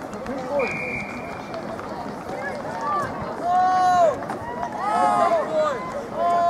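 Several voices shouting overlapping, rising-and-falling calls, with a short steady whistle note about half a second in.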